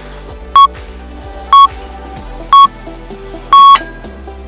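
Workout interval timer counting down: three short beeps a second apart, then a longer final beep that marks the end of the exercise interval, over background music.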